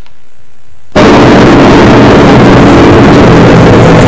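A sudden, very loud blast of dense, rumbling noise starts about a second in and holds steady at full level for several seconds, like an explosion sound effect.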